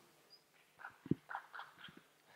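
Quiet room tone with faint, indistinct sounds: a soft low knock about a second in, among a few faint voice-like sounds.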